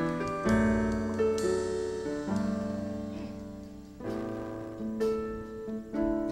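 Digital keyboard with a piano sound playing a slow instrumental intro: chords struck about once a second, each ringing and fading until the next, with a longer fade before a fresh chord about four seconds in.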